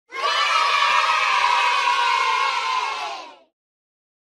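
A group of children cheering and shouting together for about three seconds, then quickly fading out.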